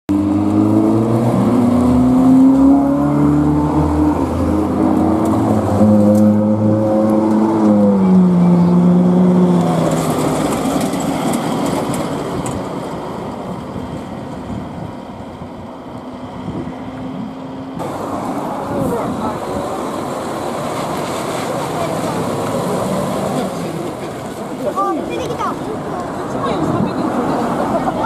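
A vehicle engine with a strong pitched note, changing pitch in steps and falling about eight seconds in as it passes, then fading. After a cut partway through, it gives way to a duller mix of idling engines and voices.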